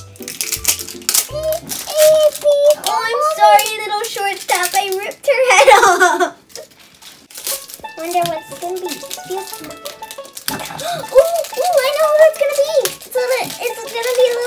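Crinkling plastic wrap and a rattling toy ball as a LOL Surprise ball and its small packets are torn open by hand. Children's wordless voices run over it, loudest about halfway through.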